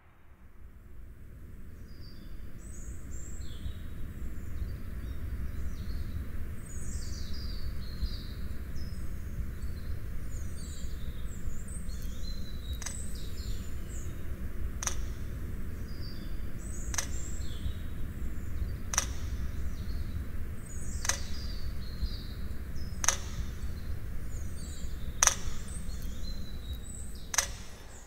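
Outdoor ambience: a steady low rumble with birds chirping, fading in at the start. From about halfway through, a sharp click comes about every two seconds.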